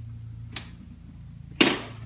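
A single sharp knock about one and a half seconds in, fading quickly, with a faint click shortly before, over a low steady hum.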